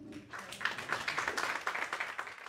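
Audience applauding, starting about a third of a second in and building into dense, steady clapping.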